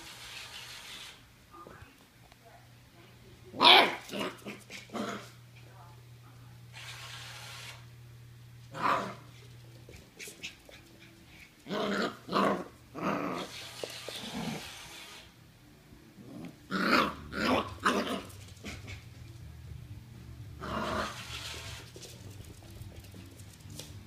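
Norwich terrier puppy barking and growling at a toy, in clusters of several quick, short yaps; the loudest comes about four seconds in.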